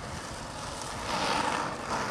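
Skateboard wheels rolling on asphalt: a steady rough rumble that swells about a second in.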